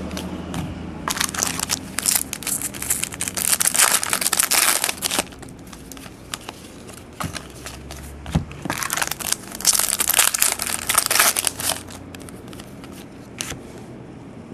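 Rustling and crinkling from trading cards being handled and slid against one another, in two bursts of a few seconds each.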